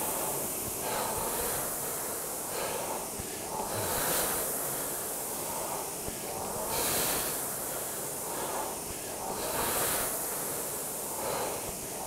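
Concept2 indoor rower's air-braked flywheel whooshing, the rush swelling on each drive about every three seconds at an easy stroke rate, with the rower breathing.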